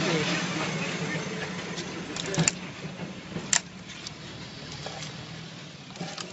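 A car engine idling steadily, with two sharp clicks about a second apart near the middle.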